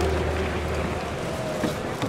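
Steady crowd and room noise in an indoor baseball stadium between PA announcements, with a low hum from the PA fading out about halfway through.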